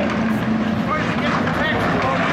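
Engines of a pack of IMCA Hobby Stock race cars running on a dirt oval, heard from the stands, with voices talking over them.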